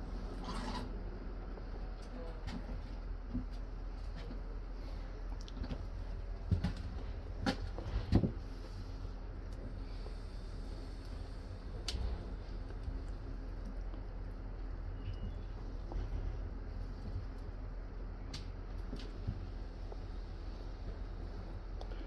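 Steady low hum inside a passenger train's vestibule, with a few scattered clicks and knocks, several close together about a third of the way in.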